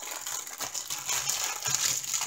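Plastic bag of diamond painting drills being handled, crinkling and rustling in small irregular crackles.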